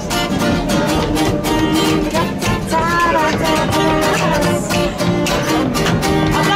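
Live acoustic music: an acoustic guitar strummed in a quick, steady rhythm, with hand claps and a wordless melody line over it.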